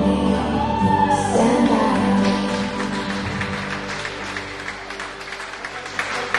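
A song ends on a held sung note, and guests start clapping about two seconds in. The applause carries on as the music fades.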